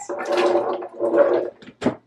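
Cooked pinto beans poured from a glass measuring cup into a blender jar holding water, sliding and splashing in, with a sharp knock near the end.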